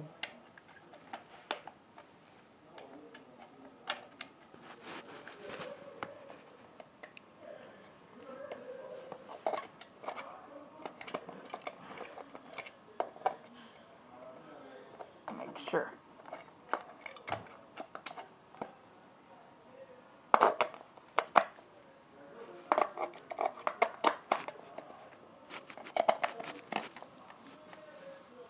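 Irregular clicks, knocks and scrapes of a plastic battery-operated toy being handled while its batteries are swapped and its corroded battery contacts cleaned, with louder bursts of clattering in the last third.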